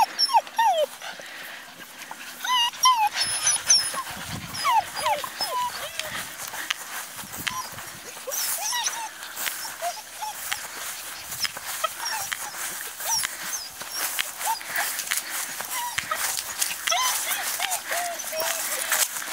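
Several Bohemian Shepherd (Chodský pes) puppies squeaking as they play together, many short high-pitched calls scattered throughout, over rustling and scuffling in the grass.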